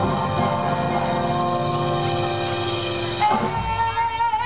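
Live blues band playing with electric guitars, bass, drums and keyboard. About three seconds in, a woman's voice starts a long held note with vibrato over the band.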